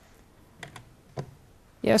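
Three light, sharp clicks of a computer key advancing a presentation slide.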